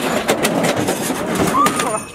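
A metal-framed racing go-kart scraping and clattering against a pickup truck bed as it is hauled out, a quick run of knocks and rattles, with a short voice sound near the end.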